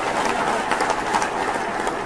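A title-card sound effect: a loud, steady rush of dense noise that cuts in suddenly just before and runs on unbroken.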